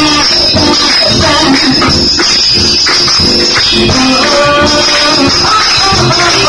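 Live jazz band playing, with a woman singing into a microphone over the drums and the audience clapping along in time.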